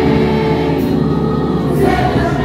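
Church congregation singing a worship song together, many voices holding long sustained notes.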